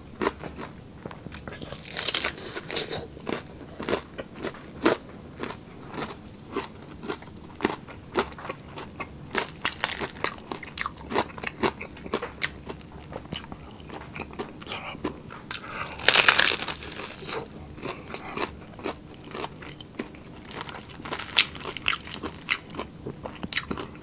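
Close-miked bites and chewing of crispy pata, the deep-fried pork leg's crackling skin crunching in dense sharp cracks. Louder crunching bites come every few seconds, the loudest about two-thirds of the way through.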